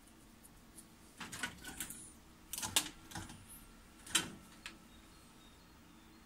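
A run of sharp clicks and clacks from hand tools and wires being handled, most likely wire cutters snipping a crimped terminal off a wire. The loudest clicks come a little under three seconds in and about four seconds in.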